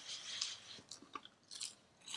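Two people biting into and chewing air-fried breaded mac and cheese bites: faint mouth sounds with a few small crunches about halfway through and again shortly after.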